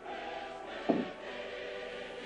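Background choral music: a choir holding sustained chords. A brief, louder sound breaks in about a second in.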